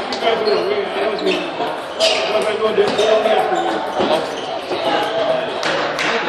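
Table tennis balls clicking irregularly off tables and bats at several tables in a large, echoing hall, over steady background chatter of voices.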